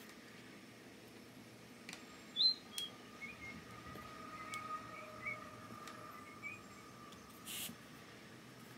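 Faint, scattered clicks of small glass mosaic tiles and gems knocking together as they are picked from a loose pile, with a few faint high chirps between them and a short hiss near the end.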